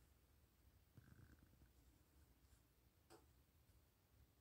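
Near silence: faint room tone, with a soft faint knock about a second in and a single faint click a little after three seconds.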